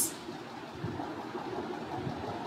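Low, steady background noise: room tone and microphone hiss, with no distinct event.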